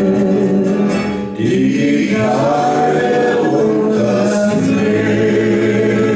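A man and a woman singing a German schlager duet together over a karaoke backing track. From about two seconds in, they hold long sustained notes.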